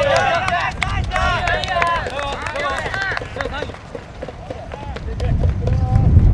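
Footballers' voices shouting and calling to one another across the pitch during open play, with a few sharp knocks. A low rumble swells near the end.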